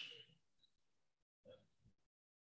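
Near silence on a video call: a faint hiss fades out at the start, a brief faint sound comes about one and a half seconds in, and the audio drops to dead silence in between.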